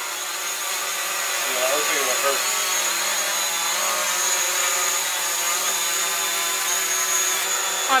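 DJI Mavic Pro quadcopter hovering close overhead: the steady buzzing hum of its four propellers with a high-pitched whine over it.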